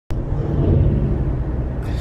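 Steady low rumble of a car being driven, heard from inside the cabin: engine and road noise, starting with a click at the very start.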